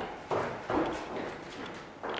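Quick footsteps on a cobbled stone floor, a few hard steps with a short echo off the surrounding walls, growing fainter as the walker moves away.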